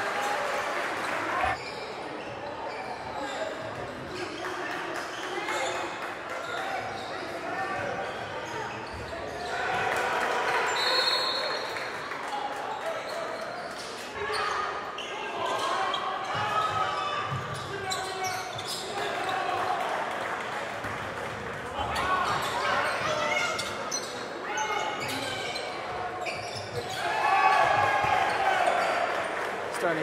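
Live basketball game sound in a gym hall: a basketball bouncing on the hardwood court, with the indistinct voices of players and spectators throughout.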